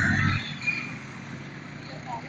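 A motorcycle passing close by, loudest right at the start and fading within about half a second, followed by a steady low hum of street traffic.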